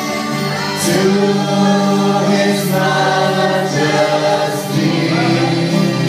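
A group of voices singing a gospel worship song together, holding long notes.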